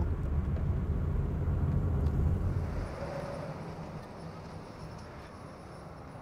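Low, steady rumble of a moving car, engine and road noise heard from inside the cabin, fading away over the second half.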